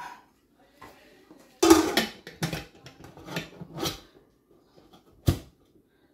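Stainless steel pressure cooker lid being set on and locked: a run of metal clanks and clicks for a couple of seconds, then one sharp, loud clack near the end.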